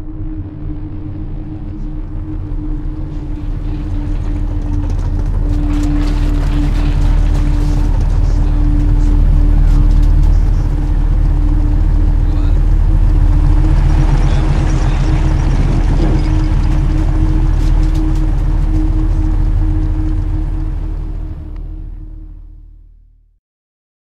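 Dense, steady low drone of a film's closing sound design, with a sustained hum and a rumbling wash of noise over it, building in loudness over the first several seconds and fading out at the very end.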